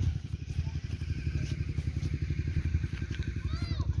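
A small engine running with a rapid, even low putter.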